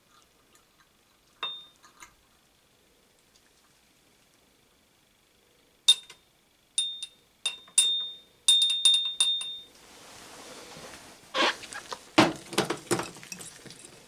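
Laboratory glassware clinking. A couple of faint taps come first, then a run of sharp glass clinks with a brief ring about six to nine seconds in. Softer rustling and duller knocks follow near the end as a glass jar is handled.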